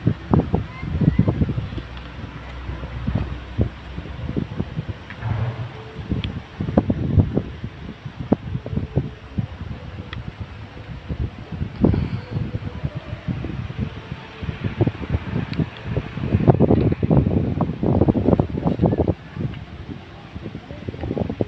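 Irregular low rumbling and short knocks from wind buffeting and handling of a handheld phone microphone, busiest near the end.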